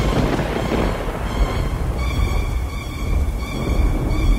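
Thunder: a sudden crack at the start, then a long low rumble that swells and fades, over dark ambient music.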